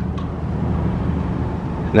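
Steady low engine rumble with a faint low hum, even throughout with no distinct events.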